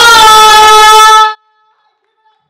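A loud voice glides up into a long, steady, high held note that cuts off abruptly about a second and a half in.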